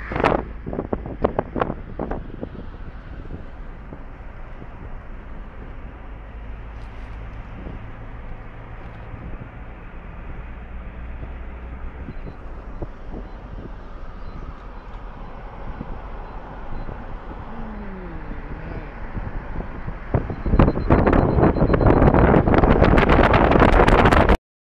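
Wind rumbling on the microphone, with a few knocks near the start. About twenty seconds in it suddenly grows much louder and harsher.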